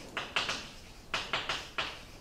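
Chalk writing on a blackboard: a quick run of about seven short, sharp strokes and taps.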